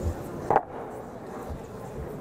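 A single short knock about half a second in, as the disc and hoop are set down at the top of a wooden board ramp, over steady room noise.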